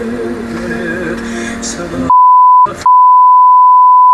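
A loud, steady 1 kHz censor bleep starts about halfway through and covers swearing, with a short break soon after it begins. Before it, quieter sound from inside the car with a low voice.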